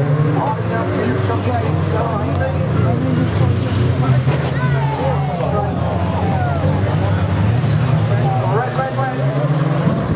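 Several banger racing cars' engines running together, a steady low drone with pitches rising and falling as the drivers rev.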